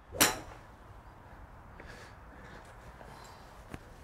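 A single sharp swish about a quarter second in, then faint steady background hiss with a soft click near the end.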